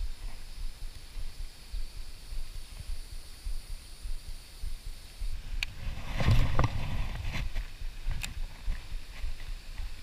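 Low, uneven thumping and rumbling from handling and movement on a body-worn action camera's microphone. About six seconds in there is a louder burst of rustling with a few sharp clicks as an arm sweeps quickly past the camera.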